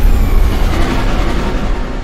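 Sci-fi escape-pod launch sound effect: a loud, deep rumble with hiss, strongest at the start and slowly easing off.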